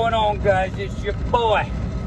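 Steady low rumble of a truck's engine and road noise inside the cab while driving, under a man's voice.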